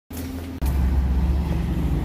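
Steady low rumble of road traffic, stepping up abruptly in loudness about half a second in.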